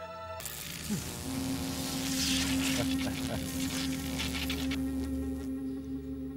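Electric buzzing of an electroshock device, starting suddenly about half a second in with a steady hum that fades near the end, over a sustained dramatic music score.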